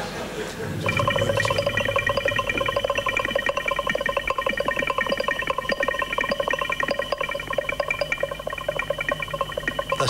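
Electronic sound from a film soundtrack: a steady chord of several tones with a fast fluttering rattle, starting about a second in.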